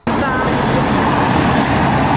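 A van driving along a narrow stone-paved street close by: a loud, steady rush of engine and tyre noise that starts suddenly.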